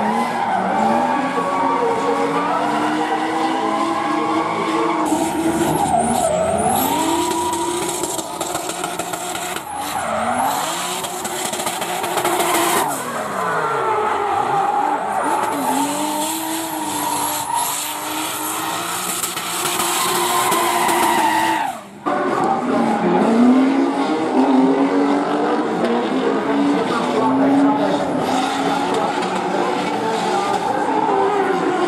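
Drift car's 2JZ straight-six engine revving hard, its pitch repeatedly rising and falling as the throttle is worked through a drift, with tyres squealing and hissing as they spin.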